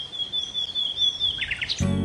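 Songbird calling: a thin, high held whistle with short looping chirps over it, then a few quick falling chirps. Soft background music comes in near the end.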